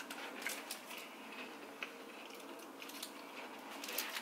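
Faint, scattered crunching and crackling of a Kit Kat wafer bar being bitten and chewed.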